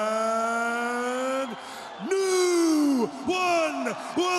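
A male ring announcer's voice stretching one long, slowly rising syllable as he builds up to naming the winner, breaking off about a second and a half in, then a second drawn-out call that falls in pitch.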